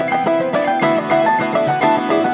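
Hollow-body electric guitar played solo: a fast run of picked notes over held lower notes.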